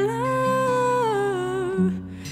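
A woman's voice singing a wordless melody over acoustic guitar: one long note that steps up soon after the start, holds, then slides back down and breaks off just before the end, while the guitar's low notes change a couple of times underneath.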